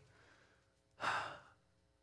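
A man's single audible breath, lasting about half a second, about a second in.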